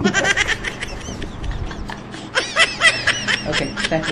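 A woman laughing in quick high-pitched giggles: a short burst at the start, then a longer run from about two seconds in until near the end.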